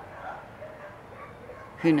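Several dogs barking faintly.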